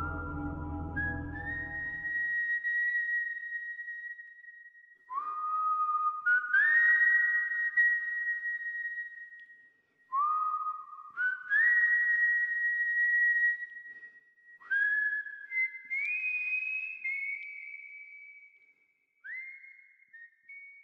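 A whistled tune in about five short phrases, each sliding up into a high held note, with pauses between them. A low musical accompaniment dies away in the first two seconds.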